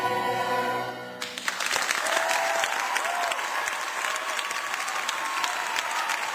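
Cast chorus and pit orchestra holding the final chord of a stage musical, which cuts off about a second in, followed by audience applause.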